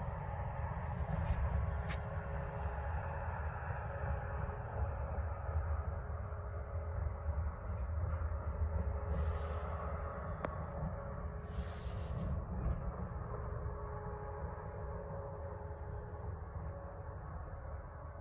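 Steady low rumble of the open-air background with a faint steady hum, broken by brief hisses about nine and twelve seconds in.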